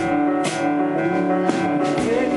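Live band playing an instrumental passage: electric bass and a drum kit with a sharp cymbal or drum hit about once a second, over sustained chords.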